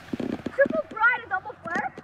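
Children's voices calling out, high-pitched and lively but without clear words, with a quick run of clattering knocks in the first half second.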